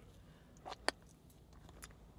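Quiet, with a few faint short clicks; the sharpest and loudest comes just under a second in.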